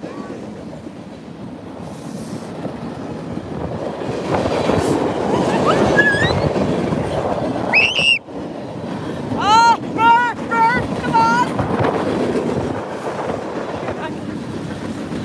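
BNSF freight train cars rolling past close by on the rails, a steady rumble that grows louder after a few seconds. Short, high squeals cut in over it a few times near the middle, then come as a quick run of five.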